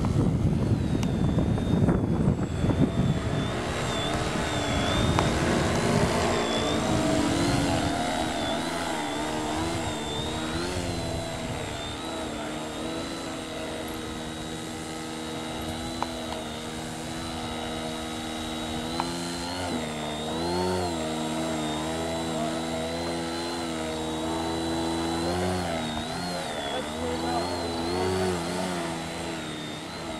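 Small electric motor and propeller of a foam RC plane whining, its pitch rising and falling again and again as the throttle is worked. A rushing noise covers the first several seconds.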